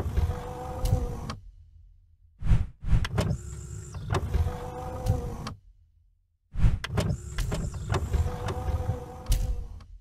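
A mechanical whirring sound effect, like a power window motor or a motorized sliding door, with clunks at its start. It plays three times with short gaps: the first ends about a second in, and the others start at about two and a half and six and a half seconds.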